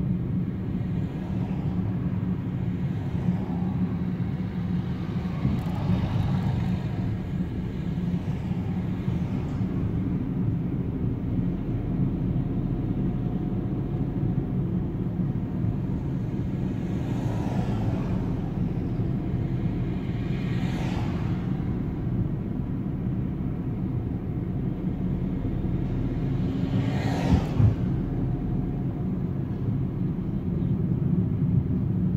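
Steady engine and road rumble heard inside a small car's cabin as it drives along a city street. A few brief louder sounds come through at intervals, the loudest near the end.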